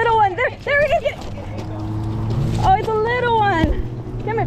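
Excited shouting from a person urging on dogs during a rat chase, with a long, high-pitched call about three seconds in, over the steady low hum of a vehicle engine.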